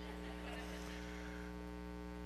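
Steady electrical mains hum: a low, unchanging hum made of several steady tones.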